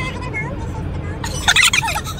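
A short burst of high-pitched, warbling laughter about a second and a half in, over the low rumble of a moving car's interior.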